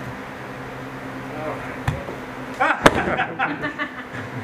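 Steady low room hum, then a short burst of voice with one sharp slap about three seconds in, the loudest sound, during judo grip-fighting practice on mats.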